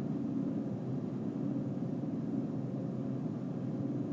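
Steady road noise inside a pickup truck's cabin at highway speed: an even low rumble of tyres and engine that does not change.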